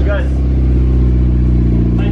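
Mitsubishi Lancer Evolution X's 2.0 L turbocharged four-cylinder idling steadily through a single-exit titanium Tomei exhaust. This is just after its first startup on the new exhaust, and it is running a little rich.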